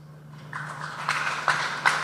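Audience applause starting about half a second in: a spread of hand claps with a few sharper single claps standing out.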